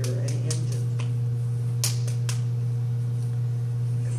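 Steady low electrical hum with a fainter higher steady tone, and a handful of sharp clicks or taps scattered through it, the loudest a little under two seconds in.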